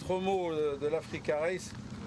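A man speaking in short phrases, with brief pauses between them.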